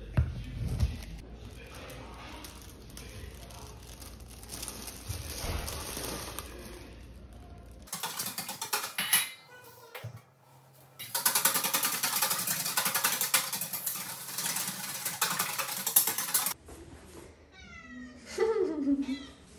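A few low knocks, then tap water running into a kitchen sink for about five seconds. Near the end a cat meows.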